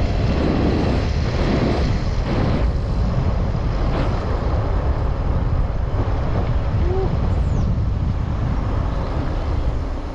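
A car driving along a road: a steady, loud rumble of road and engine noise, heaviest in the low range.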